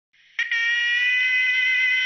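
A single steady pitched tone with many overtones, starting about half a second in and held without any change in pitch or level.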